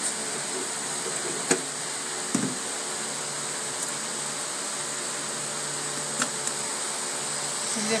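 An electric fan running steadily with a faint hum. A few light clicks of metal drawer pulls being handled on the painted wooden dresser drawers, the sharpest about a second and a half in.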